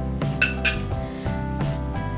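Dishes and utensils clinking as they are handled, with two light clinks about half a second in, over steady background music.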